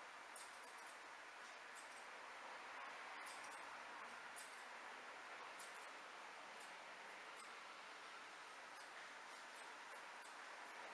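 Faint hairdressing scissor snips through short hair, small crisp ticks at irregular intervals of about once a second, over a steady low hiss.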